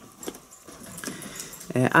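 Faint rustling with a few light clicks during a pause in speech, then a man starts speaking near the end.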